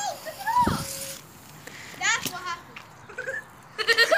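Children's voices making short, high-pitched wordless calls with gliding, wavering pitch, with a low thud just under a second in.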